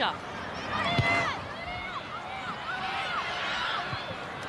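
Distant voices shouting calls across a rugby league field over open stadium noise, with a single dull thump about a second in.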